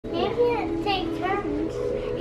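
A young child's high-pitched voice, with no clear words, rising and falling in pitch throughout.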